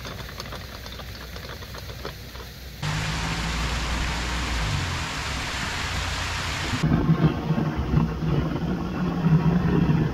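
Light clicking of lock paddle gear being wound. About three seconds in, it changes suddenly to the steady rush of water gushing over and through a lock's top gates into the chamber. Near seven seconds it changes again to a louder, rumbling rush of water spilling down a weir.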